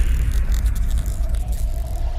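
Cinematic logo-reveal sound effect: a deep, steady rumble under a fading hiss, with a faint steady tone joining near the end.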